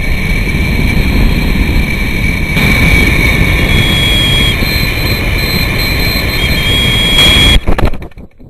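Loud wind rushing and buffeting over the microphone of a camera carried aloft on a model rocket in flight, a dense low rumble with a thin steady high whine over it. It cuts off abruptly near the end.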